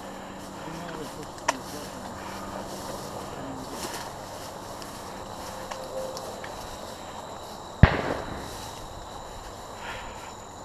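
A single sharp, loud bang about eight seconds in, with a brief ring after it, over the rustle of footsteps through dry grass.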